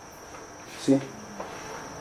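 Pause in speech: a faint, steady high-pitched tone runs on unbroken, with one short murmured voice sound about a second in.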